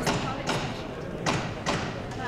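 Four sharp knocks at uneven spacing, two of them close together past the middle, over background voices.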